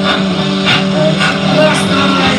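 Live rock band playing, electric guitars to the fore over a steady beat.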